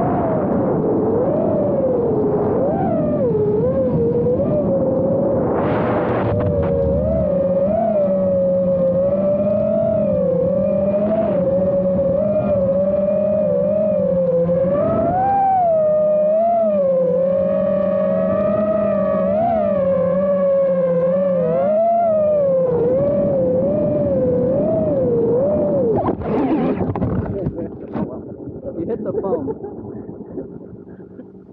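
Electric motors and propellers of a small FPV quadcopter, heard from its onboard camera, whining with a pitch that wavers constantly as the throttle is worked. About 26 s in the sound turns choppy and breaks up as the quad goes down into the grass, then fades.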